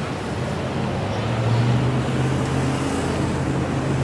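Road traffic: a passing vehicle's engine, a steady low drone that grows louder about a second in.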